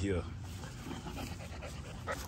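XL American Bully puppies panting softly.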